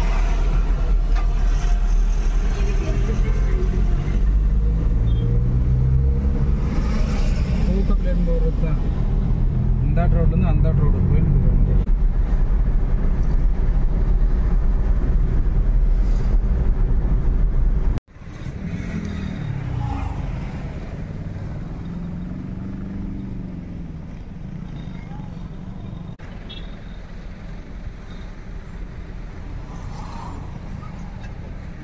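Car cabin noise while driving: a steady low engine and road rumble with people talking over it. About two-thirds of the way in the sound cuts off suddenly and comes back as a quieter, lighter rumble.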